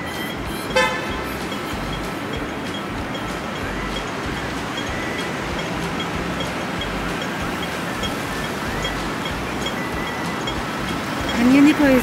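Street traffic noise with a short car horn toot about a second in. A pedestrian crossing signal pips steadily throughout, about twice a second.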